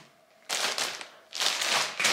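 Clear plastic clothing bag crinkling and rustling as it is handled, in two short bursts, the first about half a second in.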